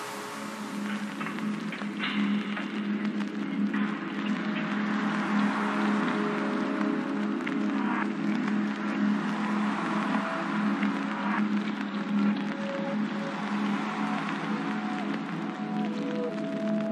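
Slow background music: a steady low drone with long held notes, over a constant soft hiss like rain.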